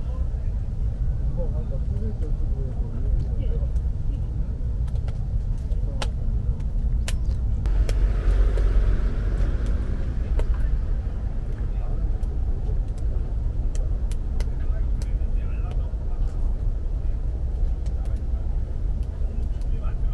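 Wood crackling in a small wood-burning camp stove, sharp pops every second or two over a steady low rumble, which swells for a couple of seconds about eight seconds in.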